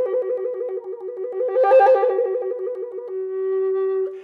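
Native American flute playing a rapid trill between its two lowest notes, swelling louder toward the middle and easing off again. About three seconds in the trill stops and the flute holds the lower note steadily.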